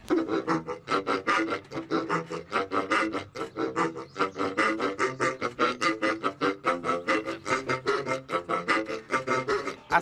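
A fast tune played on rubber pig squeak toys, each pig squeezed down into one of a row of tubes so that it squeaks a note: a quick, steady run of short squeaky notes, about five a second.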